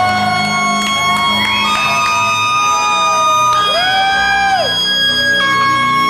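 Live electronic music played on synthesizers: long held synth notes that step to a new pitch every second or so, some sliding up and then back down, over a steady pulsing bass.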